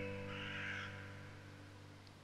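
The last piano chord of a slow worship piano piece dies away. Over it, a forest bird gives one call in the first second, part of a woodland nature-sound bed.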